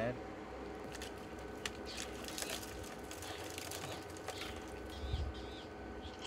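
A leopard feeding on a duiker carcass: soft, scattered crunching and clicking over a steady low hum, with a few faint bird chirps about five seconds in.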